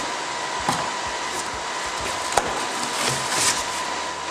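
Steady whooshing of IBM server fans running flat out in "panic mode" during an install, with a faint steady whine in it. Over it come a few light knocks and a brief rustle of styrofoam packing being lifted out of a cardboard box.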